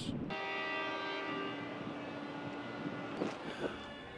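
A ship's horn sounding one long, steady note that slowly fades away.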